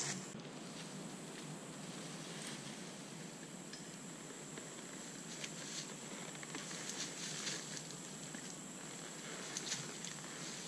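Faint footsteps and rustling in tall grass as a man mounts a saddled mule and it shifts its feet, with a few soft clicks and a steady faint outdoor hiss underneath.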